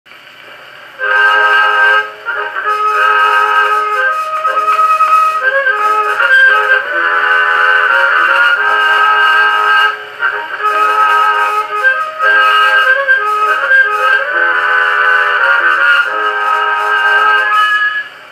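Edison Blue Amberol cylinder playing on an Edison cylinder phonograph through its horn: the instrumental introduction of a 1925 country recording, starting about a second in. The music sounds thin, with no bass, as from an acoustic-era recording.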